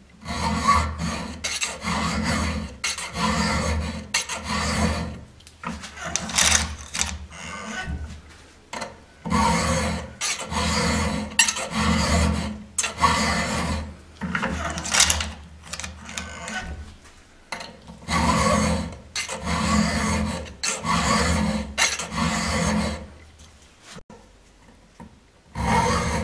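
A steel double chisel bit file being pushed by hand across a chainsaw chain's cutter, square-grinding the tooth: repeated rasping strokes of file on steel, about two a second, in several runs with short pauses between them.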